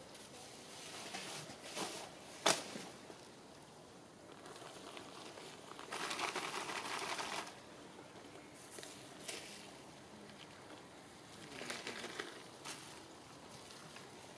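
Plastic litter and dry reed debris crinkling and crackling as they are pulled and handled, in short bursts, with a sharp snap about two and a half seconds in and a longer crinkling burst of about a second and a half near the middle.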